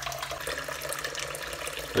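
Tap water running steadily in a thin stream into a bowl of rice in a stainless steel sink, rinsing the rice until the water runs clear.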